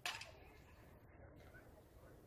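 One sharp knock or clap right at the start, with a short ring after it, then faint steady background noise.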